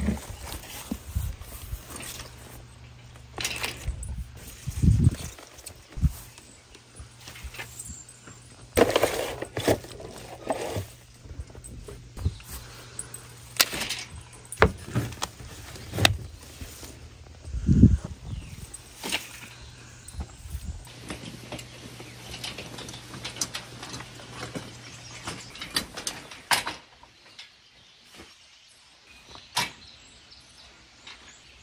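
Scattered knocks, thumps and rustling from handling potted plants in plastic nursery pots, loudest in a few bumps about 5, 9 and 18 seconds in.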